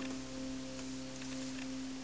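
Acoustic guitar chord ringing out and slowly fading as the song closes, with a few faint clicks of fingers on the strings.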